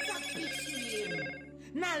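An electronic ringing tone, several high steady pitches sounding together, starts suddenly and holds for about a second and a half before stopping.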